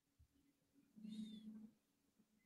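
Near silence: room tone, with one faint, short sound about a second in.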